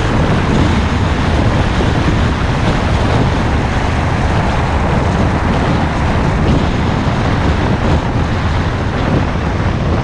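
Aprilia Scarabeo 200ie scooter riding at a steady speed. Its single-cylinder four-stroke engine runs under a loud, steady rush of wind over the camera microphone.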